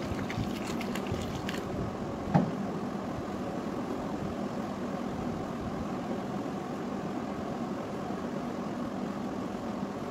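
Steady background rumble and hiss, with a few faint clicks in the first second or so and a single sharp knock with a short ring about two and a half seconds in.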